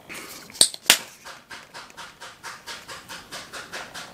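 Two sharp clicks as a plastic tube of facial scrub is opened and handled, then a steady rubbing, about two or three strokes a second, of creamy exfoliating scrub with small grains being worked into the back of a hand.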